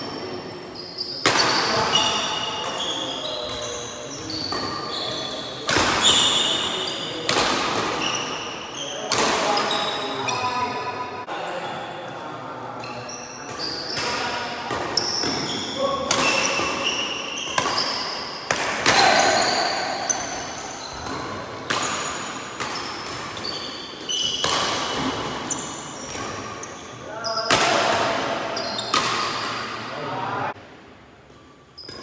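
Badminton rally: rackets striking the shuttlecock about once every second or two, each sharp hit echoing in a large hall, with shoes squeaking on the wooden court floor between the hits.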